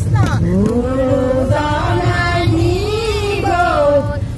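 Women singing a devotional hymn together through a microphone, their voices gliding between held notes, with a hand drum beating underneath.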